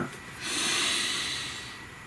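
A man taking one long, deep breath: a breathy hiss that swells about half a second in and slowly fades away.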